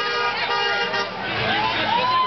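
A car horn sounds for under a second, then men on the street let out long, drawn-out shouts.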